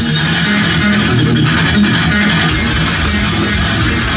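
Electric guitar played live, a dense run of pitched notes in progressive-metal style. The lowest notes and the high cymbal-like hiss thin out early and return in full about two and a half seconds in.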